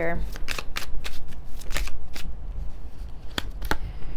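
A tarot deck being shuffled by hand: a run of quick card flicks and riffles, thinning out toward the end.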